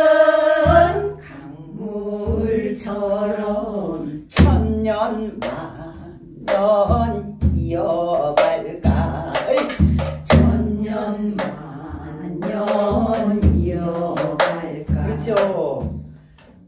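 A woman singing a Gyeonggi minyo (Korean folk song) line in a long-held, wavering, ornamented voice, accompanying herself on a janggu hourglass drum struck with a thin stick in the 12-beat gutgeori rhythm. Deep drum strokes and sharp stick clicks fall about once a second under the voice.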